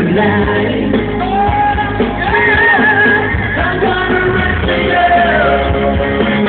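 Live pop music: male vocalists singing into microphones over amplified band backing, heard from within the audience.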